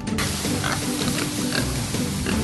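Pigs grunting in a pen, short grunts every half second or so, over background music.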